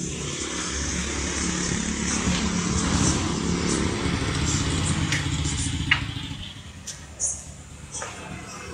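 A motor vehicle's engine running steadily nearby, fading away about six seconds in.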